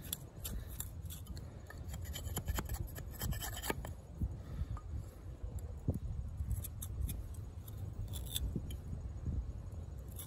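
Steel knife blade shaving and scraping a wooden stick in short, irregular strokes, with scattered small clicks, over a low steady rumble.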